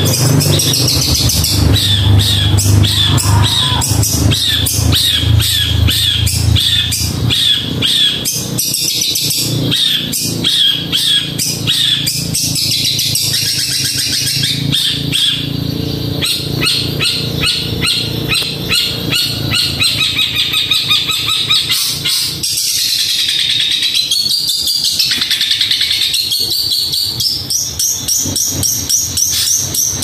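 Long-tailed shrike (cendet) singing a fast, tightly packed stream of short, high chattering notes, with a long swooping note that dips and climbs back about two-thirds of the way through. A low rumble sits under the song for the first several seconds.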